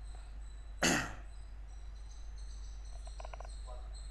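A single short cough about a second in, over a steady low hum and a faint high-pitched whine.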